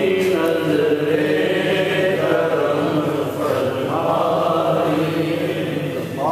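Men's voices chanting a naat, a devotional Urdu poem in praise of the Prophet, in long held melodic lines with no instruments.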